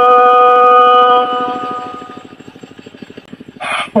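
Red Dao hát lượn singing: a single sung note held steady at the end of a phrase, fading away over about a second, then a short hiss just before the next phrase begins.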